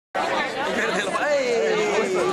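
Several people talking at once, overlapping chatter that starts abruptly just after the beginning, with one voice drawing out a long falling sound near the end.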